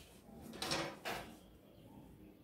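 Two short scrapes as a metal ruler and cotton fabric are moved about on a wooden tabletop, the first a little over half a second in and a shorter one about a second in.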